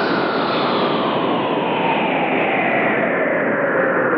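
Loud theatre sound effect: a steady, dense rushing noise like a jet, whose pitch slides slowly downward.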